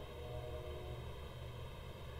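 Quiet room tone: a faint, steady low hum with a few faint steady tones, no distinct sounds.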